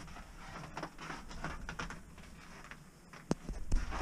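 Faint rustling and scattered light clicks and knocks in a small wooden room, with one sharp click a little after three seconds in.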